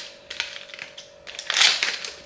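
Scissors cutting into a tough plastic cheese wrapper: a few small snips and clicks, then a louder crinkling cut near the end.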